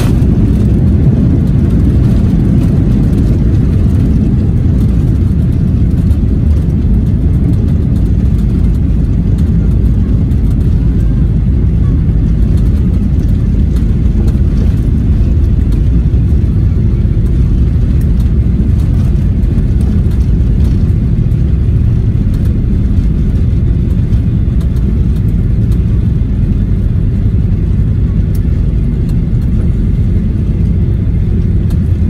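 Cabin noise of a Boeing 737 during its landing rollout, ground spoilers up: a loud, steady low rumble of engines and runway wheels that eases slightly as the aircraft slows.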